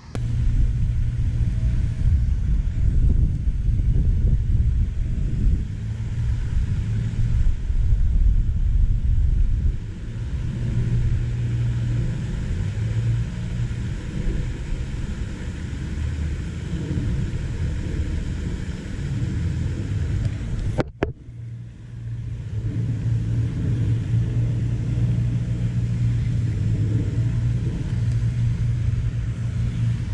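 Wind buffeting the microphone: a low, uneven rumble that rises and falls, with a brief break about two-thirds of the way through.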